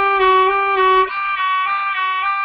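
A violin playing a sustained F sharp on the D string, then moving up to a G about a second in, bowed with even vibrato waves, about eight to a bow stroke, as a vibrato practice exercise.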